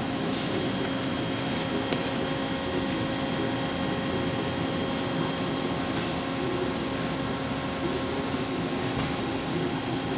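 Eagle CP60H pyramid-style roll bender running steadily, its drive giving a constant hum with a thin steady whine over it, as stainless steel angle is rolled through and the forming roll is brought down.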